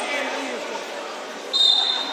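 A referee's whistle gives one short, sharp, high blast about a second and a half in, over voices echoing in a sports hall.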